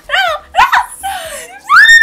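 Young women's high-pitched laughter in quick rising-and-falling bursts, ending in a loud rising squeal near the end.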